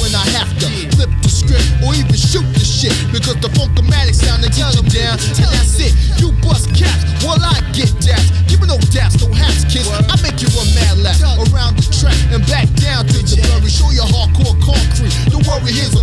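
Mid-1990s hip hop track: a heavy, repeating bass line and drum beat with rapping over it.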